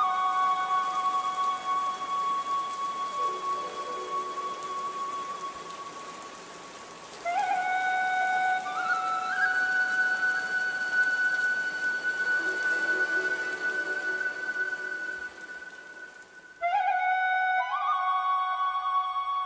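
Background music: a slow melody of long held, flute-like notes that slide up into pitch, in phrases that start afresh about seven seconds in and again near the end, over a steady hiss.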